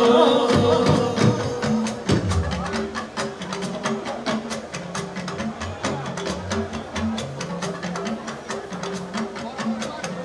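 A live band playing: the singer's voice trails off right at the start, and the band carries on more quietly with a busy, steady percussion rhythm over a repeating bass-guitar figure.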